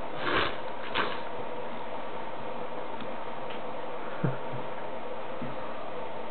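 Steady hiss with a faint hum, broken by two brief rustles in the first second and a soft knock about four seconds in.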